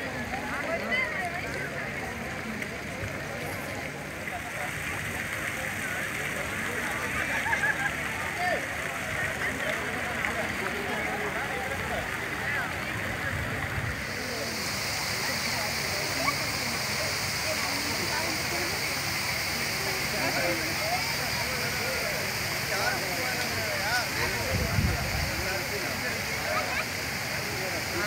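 Many people chattering at once over the steady hiss and splash of fountain water. About halfway through the water's hiss grows stronger as a spraying fountain comes close.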